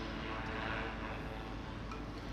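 Steady distant engine drone with a broad hiss, no distinct knocks or clicks.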